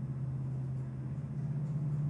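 Steady low hum with a faint hiss underneath: the background noise of a voice-over recording in a pause between words.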